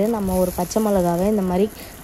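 A woman's voice drawing out a couple of long words, over a faint sizzle of onions, curry leaves and freshly added green chillies frying in oil in a kadai.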